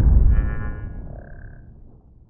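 Outro title-card sound effect: the tail of a deep low boom fading steadily away, with a brief high shimmering chime over it in the first second or so.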